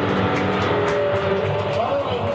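Live punk band's distorted electric guitars held and ringing out, with a wavering sustained tone over dense noise.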